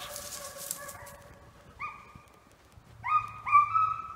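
Deer hounds baying. A long drawn-out howl fades out over the first second, a short bay comes about two seconds in, and two louder bays follow near the end.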